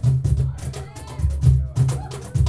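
Live percussion ensemble playing a groove of deep surdo-style bass drum strokes and sharp hand-percussion strikes. In the middle a short wavering, gliding pitched sound rides over the drums.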